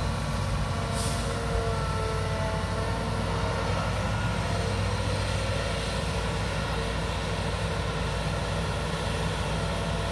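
Hitachi Zaxis 350LCH excavator's diesel engine running steadily while the machine works, swinging from the dump truck back to the sand pile. A short sharp noise comes about a second in.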